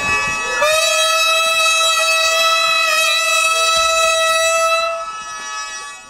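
A hichiriki, the buzzy double-reed pipe of gagaku court music, playing one long held note. It bends up into pitch in the first second, holds steady, and ends at about five seconds.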